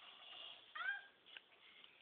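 A young kitten gives one short, high-pitched mew about a second in, rising and then falling in pitch.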